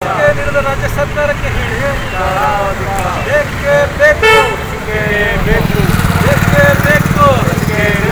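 Several people's voices over a steady low rumble of street traffic, with a vehicle horn tooting briefly about four seconds in.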